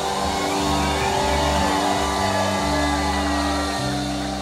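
Live rock band playing a sustained, drifting passage. Electric bass steps between long held notes under ringing electric guitar lines with slow bends, and there is no clear drum beat.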